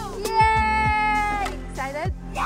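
A child's high voice holding one long sung note for about a second, then a couple of short falling cries, over pop music with a steady bass.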